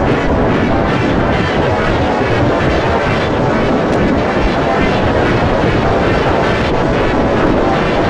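Heavily distorted, layered remix audio making a dense, steady wall of noise with no clear tune, much like a droning engine.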